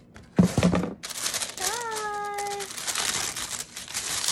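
Paper crinkling and rustling steadily as a cardboard gift box's lid comes off and a sheet of wrapping paper is lifted out, after a short bump about half a second in. A sustained hummed 'mmm' sounds over it around two seconds in.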